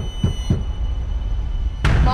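Horror-trailer sound design: three quick low thumps, each dropping in pitch, over a steady low rumble and a thin high tone, then one sharp hit near the end.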